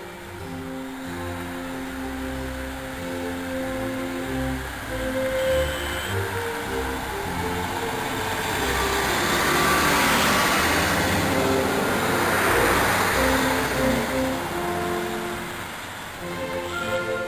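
Background music with strings plays throughout. Under it, a Class 150 Sprinter diesel multiple unit moves past, its running noise building to its loudest about ten to thirteen seconds in and then fading.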